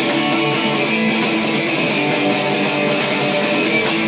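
Electric guitar power chords strummed hard and fast, up and down in a steady rhythm, the pick hitting more strings than the two notes of the chord.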